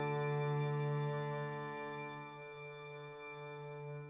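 A single piano chord sustaining and slowly dying away, several notes ringing together, with some of them dropping out about halfway through.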